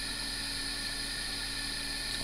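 Steady background hiss with a faint low hum: room tone and the recording's own noise in a pause between words.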